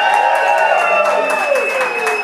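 Audience clapping and cheering in answer to a call for a round of applause, with one long, high, steady note held over the clapping.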